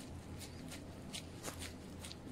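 Disposable plastic gloves crinkling in short rustles, about two or three a second, as gloved hands squeeze and press minced-meat kebab mixture onto a wooden skewer. A low steady hum runs underneath.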